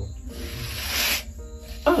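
A man's long, breathy exhale, a hiss of about a second, between two words, over soft background music.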